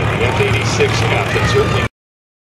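A WWII propeller fighter's piston engine running as it taxis, a steady low hum, with people talking faintly over it. The sound starts and stops abruptly.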